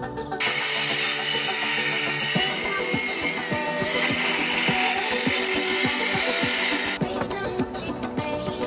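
Corded circular saw cutting through heat-treated pallet wood, a loud high whine of blade and wood. It starts about half a second in and cuts off abruptly near the end, over background music.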